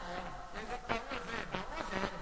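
A male voice singing embolada, a fast, chant-like sung verse, with short sharp percussion strikes between the phrases.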